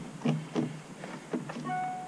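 A hose connector being worked onto an outdoor water tap: a few light knocks of plastic against the tap. Near the end there is a brief, steady high squeak.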